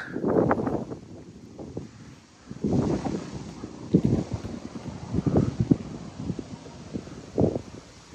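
Wind buffeting the microphone in uneven gusts, with a few short dull bumps.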